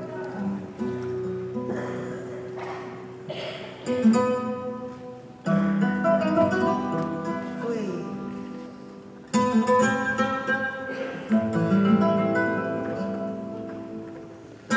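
Two flamenco guitars playing: chords struck hard every few seconds, each left to ring and fade before the next.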